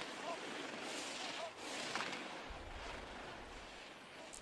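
Ski edges carving and scraping over hard-packed slalom snow, a steady hiss, with a low rumble coming in about halfway through.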